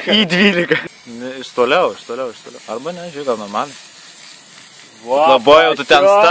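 Aerosol spray can hissing as it sprays a car's tail light, for about four seconds, with voices over it.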